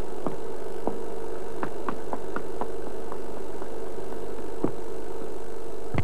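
Old-film soundtrack noise: a steady hum and hiss broken by irregular crackles and pops, like worn film running through a projector.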